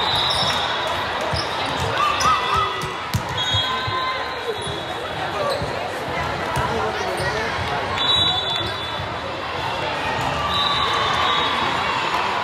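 Volleyball gym: balls being hit and bouncing on the hardwood floor, with players' voices and calls echoing in the large hall. Several short high-pitched tones sound over the din, and the knocks are thickest about two to three seconds in.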